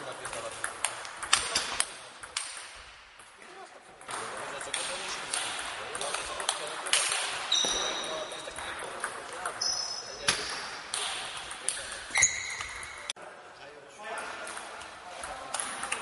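Table tennis ball clicking off the bats and table in quick rallies at the start and again near the end, with scattered ball clicks and a few short high squeaks in between.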